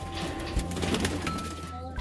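Domestic racing pigeons cooing in a loft, over background music with long held notes. The sound changes abruptly near the end.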